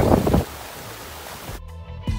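Gusty wind noise on the microphone over rushing water from a small waterfall, dropping to a quieter steady rush about half a second in. Music with low bass notes comes in near the end.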